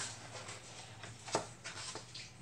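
Thick, heavy-weight coloring-book pages being turned and rubbed by hand: a few soft paper swishes, the sharpest a little over a second in.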